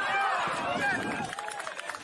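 Several people shouting at once, their overlapping calls starting loud and suddenly, followed about a second in by a run of short sharp clicks.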